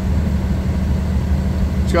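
Cummins ISL9 inline-six diesel engine idling steadily, heard from inside the truck's cab as a low, even hum.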